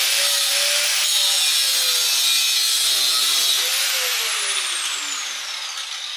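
Angle grinder with a thin cut-off wheel cutting through a rusted toilet bolt, a loud steady grinding with a high whine. About four seconds in the trigger is let go and the wheel spins down, its whine falling steadily in pitch.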